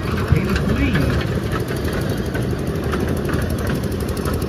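An engine running steadily at an even low hum, with people's voices over it in the first second.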